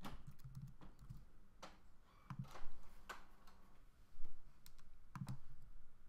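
Computer keyboard and mouse clicks: a dozen or so separate, irregular key and button clicks, two of them louder, about two and a half and four seconds in.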